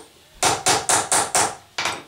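A small hammer strikes six quick blows on the metal rivet pins of a knife's celeron handle, held in a bench vise. The blows peen heads onto the rivets to fix the handle scales. Five blows come at about four a second and a last one falls near the end.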